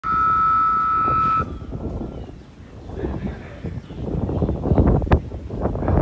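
A loud, steady electronic tone sounds for about a second and a half and cuts off suddenly, the kind of signal that starts a show-jumping round. Then wind rumbles on the microphone.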